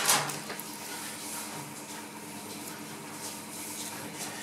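Quiet kitchen room tone with a faint steady hum, after a brief burst of noise at the very start.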